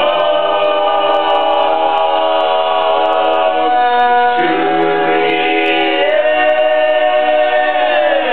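Group of teenage boys singing a cappella in barbershop-style close harmony, holding long sustained chords that change about halfway through and again near three-quarters of the way.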